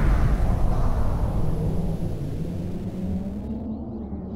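Deep rumbling tail of a cinematic boom sound effect, fading away; the higher hiss drops out near the end, leaving a low drone.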